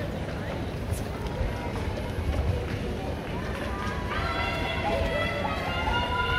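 Mass of marathon runners' footsteps on the road with crowd chatter. Music with held notes comes in about two-thirds of the way through.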